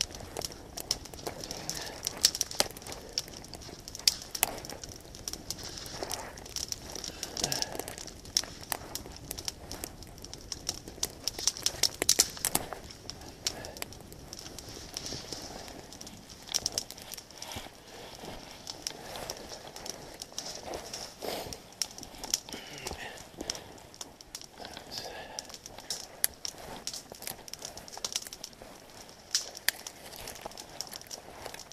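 Irregular snapping, crackling and rustling of dead twigs and small branches being broken and handled while gathering firewood in the snow.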